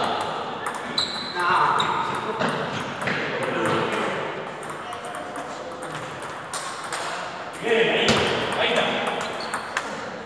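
Table tennis rally: the ball clicking off the paddles and the table in a quick, irregular series of sharp taps.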